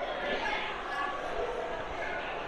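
Indistinct voices murmuring in a large, reverberant hall, with scattered low thuds.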